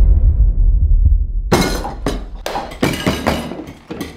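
A deep rumble dies away over the first second and a half. Then dishes, cutlery and glasses clatter on a dinner table in a quick run of sharp knocks and clinks that stops just before the end.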